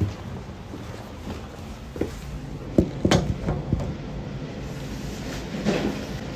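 Knocks, thumps and rustling from a phone being handled and set down to film, with the loudest sharp knock about three seconds in.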